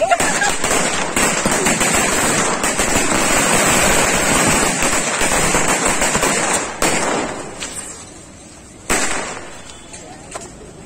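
Firecrackers going off on the street in a fast, dense run of crackling pops that stops about seven seconds in. One more loud bang comes about nine seconds in and dies away.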